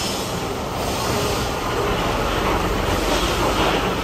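Diesel engine of an Isuzu Forward truck running as the truck moves slowly past close by: a steady low rumble with a broad hiss that grows a little louder toward the end.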